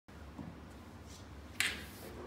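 A single sharp click about one and a half seconds in, over a low steady hum.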